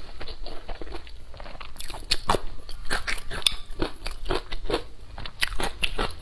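Close-miked eating: a person biting and chewing a mouthful of food, a quick run of crisp crunches that is sparse at first and comes thick and fast from about two seconds in.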